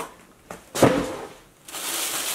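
A cardboard shoe box being handled and opened: a single thump about a second in, then a steady rustling of paper packaging.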